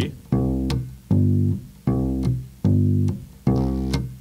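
Electric bass guitar plucked with the fingers, playing single notes of a simple country bass line: five notes about 0.8 s apart, each ringing about half a second before it is cut off.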